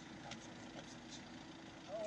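A vehicle engine idling faintly and steadily, with faint voices nearby.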